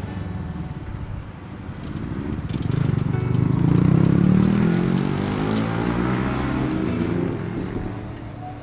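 Street traffic with a motor vehicle's engine passing close, swelling to its loudest about three to five seconds in and then fading.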